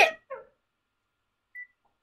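A child's voice ending a shouted "chicken!" with a short vocal trailing sound, then near silence broken by one brief high beep about one and a half seconds in.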